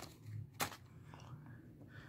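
Faint handling noise, with one sharp click a little over half a second in; otherwise quiet room noise.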